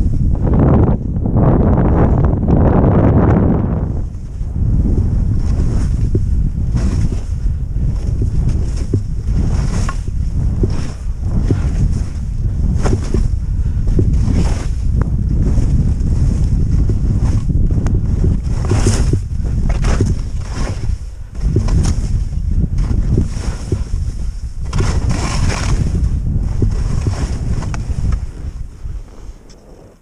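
Wind buffeting an action camera's microphone as a skier descends through deep powder, with the hiss of the skis sweeping through snow on each turn, about once a second. The noise dies down near the end as the skier slows.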